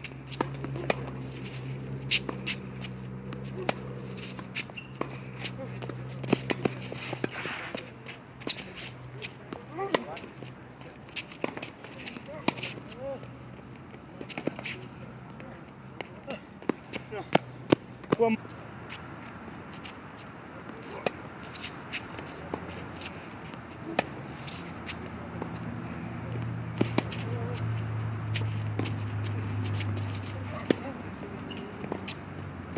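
Tennis rally on a hard court: irregular sharp pops of the ball coming off racket strings and bouncing, about one every second or so, with shoe scuffs and squeaks as the players run. A low steady hum lies underneath, strongest near the end.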